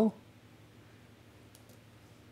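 Very quiet room tone after a spoken word ends, with a few faint clicks about one and a half seconds in.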